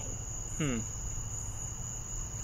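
Crickets chirping in a steady, unbroken high trill.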